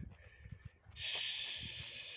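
A man's breath close to the microphone: after a faint first half, a hissing intake of breath of a little over a second, cut off abruptly.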